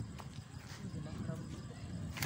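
Indistinct, low voices close by, with a soft click about a quarter of a second in and some shuffling.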